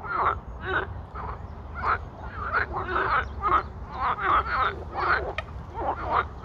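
A chorus of frogs calling from a pond: short croaking calls from several frogs, overlapping and following each other about twice a second.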